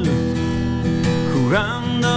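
Acoustic guitar strummed as accompaniment to a song, with a sung note sliding briefly past the middle.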